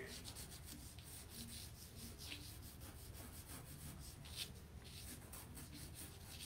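Faint scratching of a pencil on watercolour paper, many quick short strokes as curly fur is sketched in.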